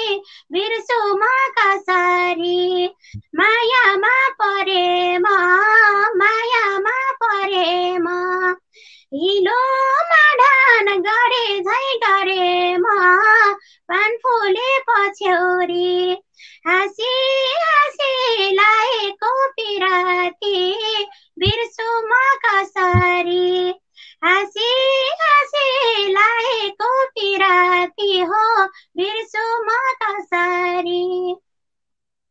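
A woman singing a Nepali dohori folk song unaccompanied, in a high voice with wavering, ornamented phrases broken by short pauses for breath.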